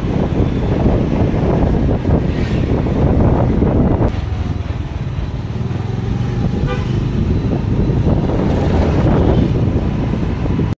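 A two-wheeler's engine running steadily as it rides along a street, with traffic around it. A short horn toot comes about seven seconds in.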